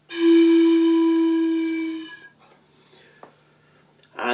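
A handheld metal train whistle blown in one steady note for about two seconds, then tailing off.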